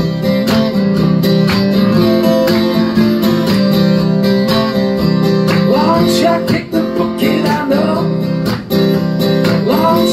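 Acoustic guitar strummed steadily in chords, an instrumental passage of a song, with two brief gaps in the strumming in the second half.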